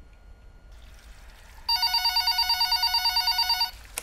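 Telephone ringing with an electronic, rapidly warbling ring. One ring lasts about two seconds and starts a little before halfway through.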